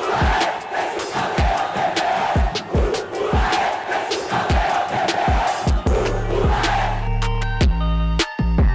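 Intro music: a football crowd chanting over a beat with a deep kick drum about twice a second. About six seconds in, a sustained bass and synth riff takes over from the crowd.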